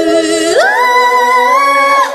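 A woman singing, sliding up about half a second in to a long, high held note.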